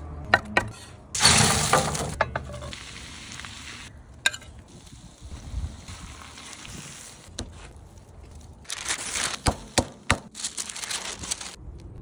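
A knife tapping sharply a few times on a wooden cutting board as herbs are chopped, then sliced onions sizzling in a hot cast-iron skillet: a sudden loud sizzle about a second in, a softer steady hiss through the middle, and another loud stretch near the end with a wooden spatula knocking and scraping as the onions are stirred.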